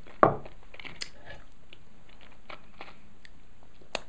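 A whisky nosing glass set down on a wooden barrel top, one sharp knock about a quarter second in, followed by a few faint small clicks.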